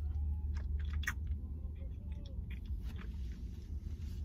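A person chewing a bite of a protein bar with small, irregular mouth clicks, over a steady low hum.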